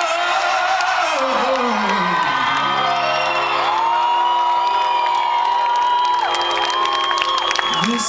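Live male singing with grand piano: a wordless vocal run slides downward, then piano chords sustain under a long held high note. The audience whoops and cheers.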